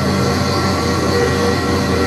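Live trumpet, violin and electronics playing together as a dense, steady drone: long held notes over a continuous noisy wash, with no beat.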